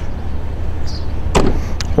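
The opening rear glass of a Range Rover Sport's tailgate being shut: one thump about one and a half seconds in, then a sharp click, over a steady low rumble.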